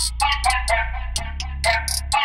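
Trap beat instrumental: a sustained 808 bass under quick hi-hats and a short plucked melody that repeats.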